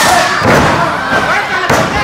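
Wrestlers' bodies hitting the ring mat, two heavy thuds about half a second in and near the end, over crowd shouting.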